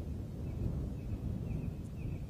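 Low, uneven outdoor rumble of wind buffeting the microphone, with a faint thin high tone coming and going through the middle.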